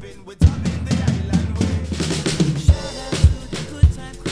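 Acoustic drum kit played live over a pop-reggae backing track. After a brief drop in the first half-second the drums come back in, and the second half carries a steady beat of bass drum and snare.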